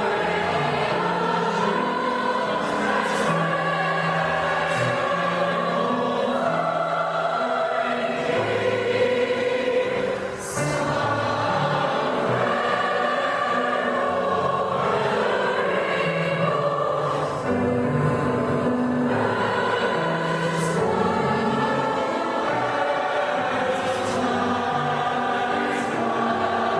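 Large mixed choir of male and female voices singing in harmony, with a brief break between phrases about ten seconds in.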